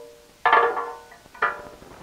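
Metal oil pickup tube clinking against the cast aluminum oil pan as it is set into place: two sharp metallic clinks about a second apart, each ringing briefly.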